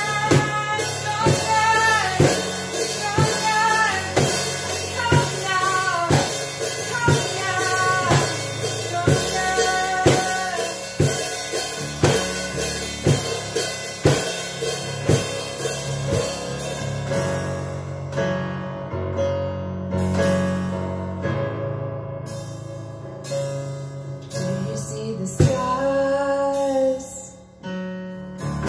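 Live acoustic pop song: a woman singing over a Casio Privia digital piano, with cajon and cymbal keeping a steady beat. A little past halfway the percussion drops out, leaving piano and voice, then comes back with a hit near the end.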